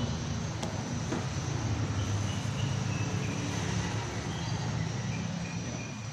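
A steady low engine hum, like a vehicle engine idling, with a couple of light clicks about half a second and a second in.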